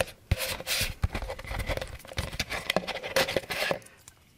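A plastic paint mixing cup being handled and moved about, with irregular clicks, rubs and scrapes of the plastic against hands and the floor.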